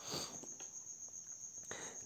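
A cricket trilling steadily in the background, a thin high-pitched tone, with a short soft rush of noise near the start.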